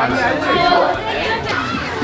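Several voices chattering over each other, with no single clear speaker.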